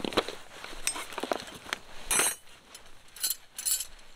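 Camping gear being handled in a fabric tent-peg bag as a steel-headed peg hammer is lifted out: a series of short rustles and light clinks, the loudest about two seconds in.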